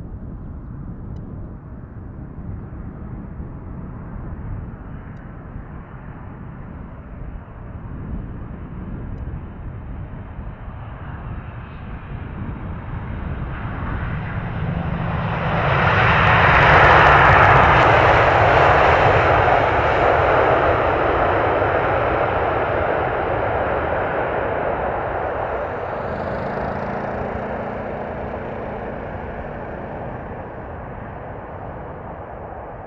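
Boeing 747-8F freighter's four GEnx turbofan engines on landing, a jet noise that builds as the aircraft nears, is loudest as it passes close by about halfway through, then slowly fades as it rolls out on the runway.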